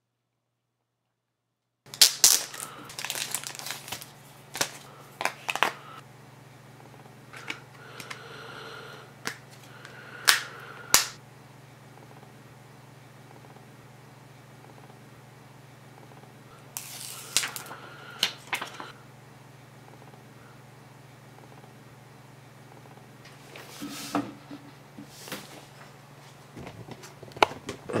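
Sharp plastic clicks and snaps in several clusters as a Samsung Galaxy S Vibrant smartphone is handled, its battery fitted and back cover snapped on, over a steady low hum.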